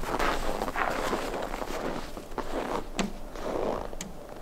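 Footsteps crunching on packed snow, with a single sharp click about three seconds in.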